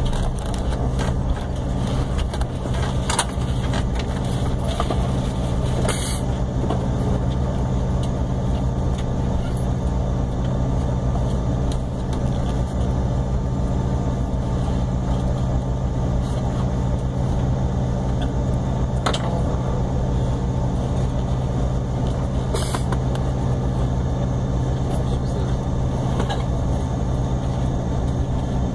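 Steady low drone inside the cabin of a regional jet as it taxis after landing, its engines running at low taxi power over the cabin air, with a few sharp clicks.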